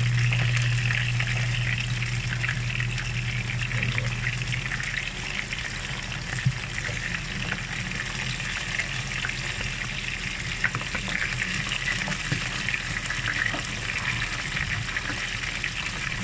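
Flour-dredged pork strips frying in oil in a skillet: a steady sizzle and crackle. A low hum fades out over the first few seconds, and two sharp clicks come about six and eleven seconds in.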